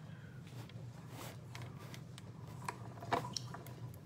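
Stampin' Up! Big Boss die-cutting machine running a sandwich of plastic cutting plates through its rollers. It is faint, with a few light clicks and knocks, more of them in the second half.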